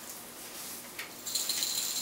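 Small jingle bells jingling briefly as they are handled, a high metallic ringing that starts about a second and a half in, after a faint click.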